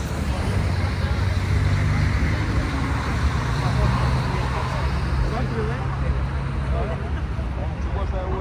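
Busy road traffic: a bus engine running close by and cars passing, with a low steady engine hum, under the chatter of a crowd of pedestrians.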